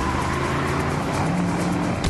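A car driving at speed: steady engine and road noise, with music playing faintly under it.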